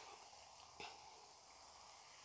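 Near silence: faint steady hiss with one soft tick a little under a second in.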